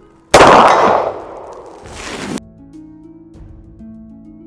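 A single shot from a short-barrelled revolver about a third of a second in, very loud, with a ringing echo trailing for about two seconds before cutting off abruptly.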